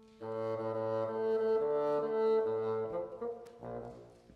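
Bassoon playing a few held low notes over a fading single piano note, as in tuning before the piece, with a shorter note near the end.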